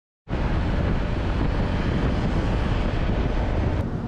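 Strong wind buffeting the microphone, a loud steady rushing and rumbling that starts abruptly a moment in, heard over open water. Near the end a click and a sudden drop in the hiss mark a change in the noise.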